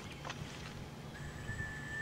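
Quiet outdoor background with a faint, thin, steady whistle-like tone that starts about halfway through.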